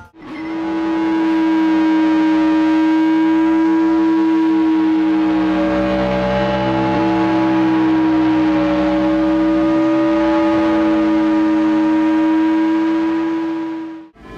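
Harsh ambient noise music: a loud, sustained drone built of a strong low steady tone with layers of steady higher tones over a hiss, sounding siren-like. It swells in over the first couple of seconds, holds with a slight waver in the middle, and cuts off sharply at the end.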